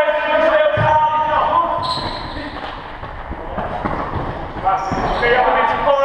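Indoor football in a sports hall: players' drawn-out shouted calls, a ball thud just under a second in, and a couple of short high squeaks from shoes on the hall floor, all with the hall's echo.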